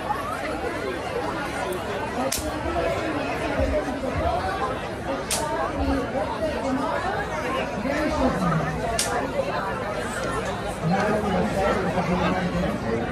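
Several people talking at once around a food stall, a steady chatter of overlapping voices. Three sharp clicks cut through it, a few seconds apart.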